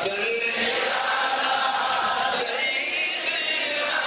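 A man's voice chanting the Arabic salawat on the Prophet in a long melodic line through a microphone, holding notes that slide up and down in pitch.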